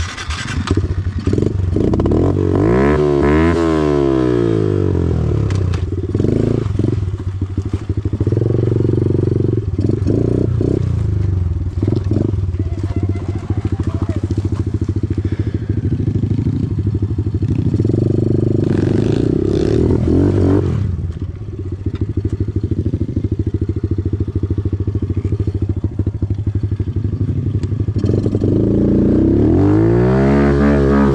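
Kawasaki KLX110R pit bike's small air-cooled single-cylinder four-stroke engine, with a Big Gun full exhaust, starting and then running close by at idle. The pitch rises and falls with throttle blips about three seconds in, again around twenty seconds, and at the very end.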